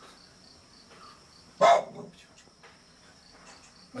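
Cricket chirping in a steady, even high pulse, about four chirps a second. One loud, short sound breaks in about a second and a half in.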